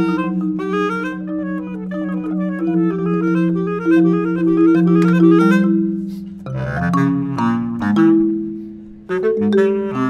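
Bass clarinet and marimba playing contemporary classical music: long held low notes under quick running figures. About six and a half seconds in, the music changes abruptly to a denser, lower passage.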